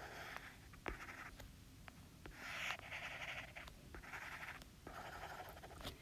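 Faint scratching of a stylus drawing on a tablet screen, in several short strokes with a few light taps between them.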